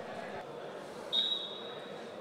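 Referee's whistle: one steady, high blast starting sharply about a second in and lasting just under a second, over a low murmur of voices in the hall.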